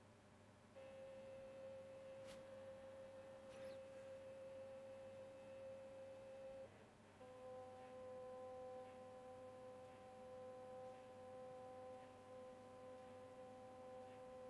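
Two small stepper motors driven by A4988 stepper drivers, running continuously with a faint, steady whine; the pitch breaks off briefly about seven seconds in and comes back as a steady whine of a few tones. They run slower than intended, which the maker puts down to the extra serial printout slowing the step loop.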